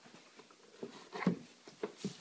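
Faint handling of a plastic Acura MDX tail light assembly being lined up against the car's rear body panel, with a few light clicks and taps as it is positioned.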